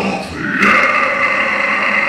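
A singer's harsh, growled vocal into a microphone through the PA, one long held growl starting about half a second in, with the band not playing.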